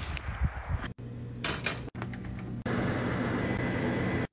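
A metal scoop digs and scrapes into snow, with uneven crunching thuds. After a couple of short unrelated snippets, a pot of water is boiling on an electric stove, giving a steady even hiss for the last second and a half.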